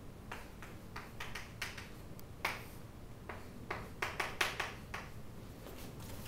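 Chalk writing on a chalkboard: a string of short, irregular taps and scratches of the chalk against the board.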